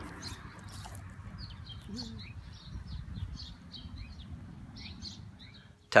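Small birds chirping, short scattered calls, over a steady low outdoor rumble.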